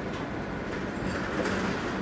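Steady background noise, an even low hum and hiss with no distinct events.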